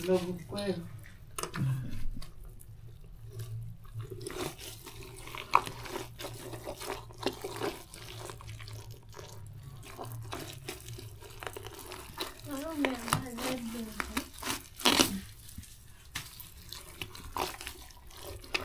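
Wet anthill-soil mud being worked by hand for a cooking stove: irregular wet slaps, pats and scrapes, with brief voices in the background.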